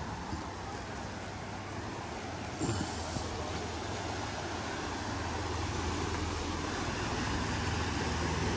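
Steady rush of fast, churning river water pouring out below a concrete spillway, with a low steady rumble underneath, growing slightly louder toward the end.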